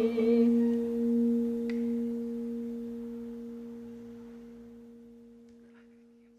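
Background music ending on one held, ringing note that slowly fades away.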